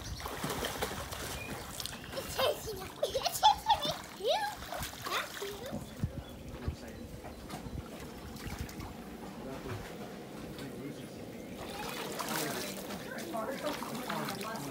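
Water splashing and sloshing as children swim and wade in pool water, with voices calling out between about two and five seconds in.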